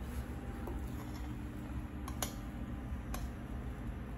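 A few faint clicks of a metal spoon against a glass bowl as whipped cream is scooped out, the sharpest about halfway through, over a low steady room hum.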